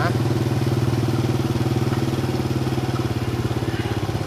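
Small motorcycle engine running steadily as the bike rolls along at a low, even speed.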